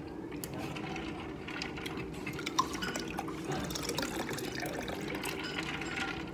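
Restaurant background noise: a steady hum under a rush of running water, with scattered light clinks of tableware and one sharper clink about two and a half seconds in.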